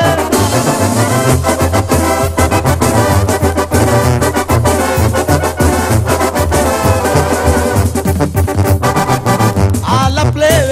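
Sinaloan-style banda music in an instrumental passage without singing: brass horns play the melody over a tuba bass line and a steady drum beat.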